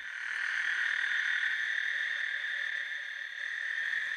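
Male toads calling in a breeding chorus: a continuous high-pitched trill with no breaks.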